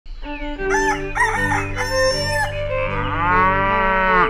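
Farm animal calls, with a rooster crowing, over music with long held notes. Near the end there is one long call that dips and then rises in pitch.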